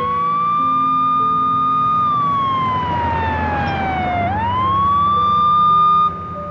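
A siren wailing: its pitch rises and holds, falls slowly for about two seconds, then climbs quickly back up and holds again.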